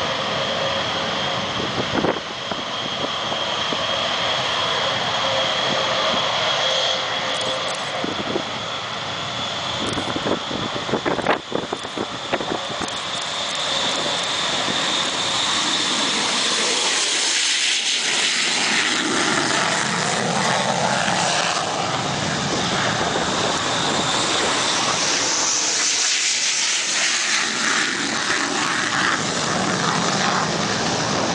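AMX attack jets' Rolls-Royce Spey turbofans running at takeoff power: a loud, steady jet roar with a high whine over it, giving way about halfway through to a broader roar as a jet rolls past close by. A few short sharp knocks come around a third of the way in.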